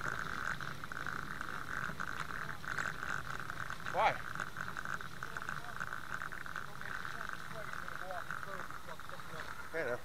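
Night insect chorus: a steady, high, fast-pulsing trill that carries on without a break.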